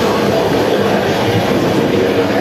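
Live heavy metal band playing loud: distorted electric guitars, bass and drums in a dense, unbroken wall of sound.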